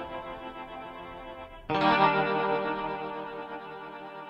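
Guitar chords in a lo-fi hip-hop instrumental beat: one held chord fading, then a new chord struck just before halfway that rings out and slowly decays.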